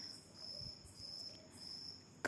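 Crickets trilling faintly: a high, steady-pitched trill that comes in bursts of about half a second.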